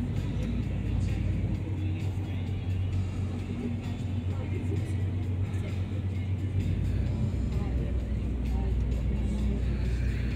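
Steady low rumble of the HOPO ferry under way, with wind buffeting the microphone on the open deck. The deepest part of the rumble drops away about a second and a half in and comes back about two-thirds of the way through.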